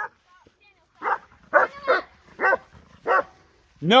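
Farm dogs barking while they chase cattle, about five short barks in quick succession. A person shouts a sharp "No!" at the very end.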